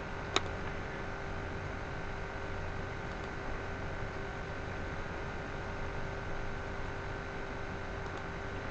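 Steady low hum and hiss of room and computer noise, with a single sharp mouse click shortly after the start as Microsoft Word is opened from the Start menu.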